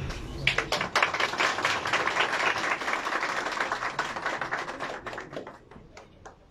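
A small crowd applauding. The clapping starts about half a second in and dies away near the end.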